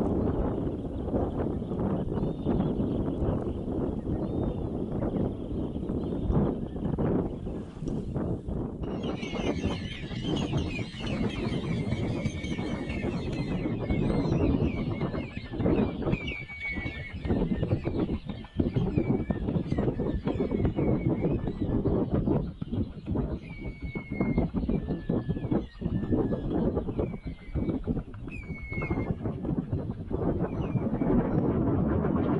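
A flock of shorebirds calling: many short, thin whistled calls, sparse at first and crowding in from about nine seconds in. Under the calls runs a heavy, uneven low rumble of wind on the microphone.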